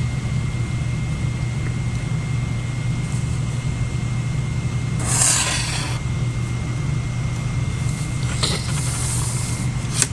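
A felt-tip marker is drawn along a plastic ruler across paper in one stroke lasting about a second, midway through. Two brief, fainter scrapes come near the end as the ruler is shifted. A steady low hum runs under it all.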